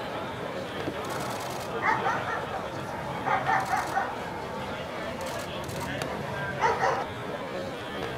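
German Shepherd Dog and helper in a protection attack over spectator chatter, with three short loud bursts of voice, dog and human, about two, three and seven seconds in.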